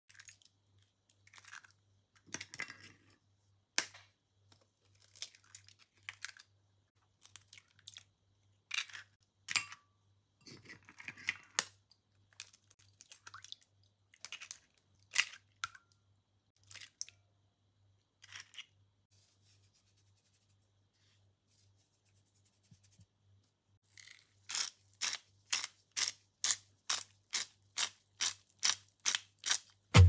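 Eggs cracked into a glass bowl one after another: scattered sharp cracks and clicks of shells breaking. Near the end a pepper mill is turned over the bowl, grinding in quick, even clicks, about two or three a second.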